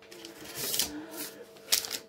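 Chocolate bar wrappers and plastic pouches rustling as they are handled and moved about, in two short crinkly spells: one about half a second in and a sharper one near the end. A faint steady hum runs underneath.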